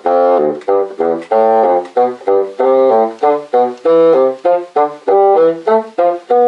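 Bassoon playing a warm-up articulation exercise: a steady run of short notes in groups of four, with the middle notes of each group slurred and the outer ones tongued.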